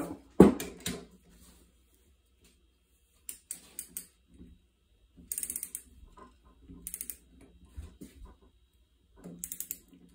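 Ratcheting torque wrench with a 13 mm socket clicking in short bursts of rapid ratchet clicks, four times, as it is swung back and forth to torque down the bolts holding a two-cylinder Rotax engine's crankcase halves together. A louder knock about half a second in.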